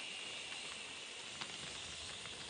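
Faint steady hiss with a few faint clicks scattered through it.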